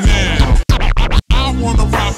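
DJ scratching a record on a turntable over a hip-hop beat, the scratched sound sweeping up and down in pitch and chopped off sharply twice.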